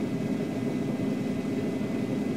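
Steady low rumble of a car being driven, heard from inside the cabin through a phone's microphone: engine and road noise with no sudden events.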